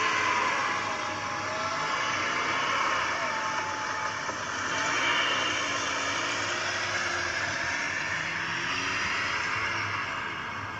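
Steady vehicle engine and road noise, a sound effect in an audio drama, following a motorbike speeding off.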